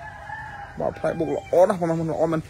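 A rooster crowing faintly in the background: one drawn-out call of about a second that rises slightly and falls away.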